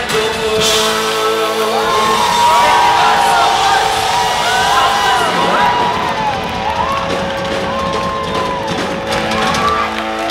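Live rock band letting a sustained chord ring while the audience cheers and whoops with rising and falling calls. The full band with drums comes back in just at the end.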